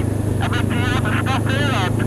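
Honda CB500X parallel-twin engine running with a steady low drone, under a voice coming over the bike-to-bike intercom.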